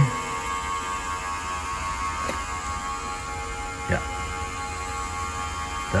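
A small smoke machine running steadily as it pushes smoke into the carburettors for a leak test: a steady hum with a few faint clicks, about two and four seconds in.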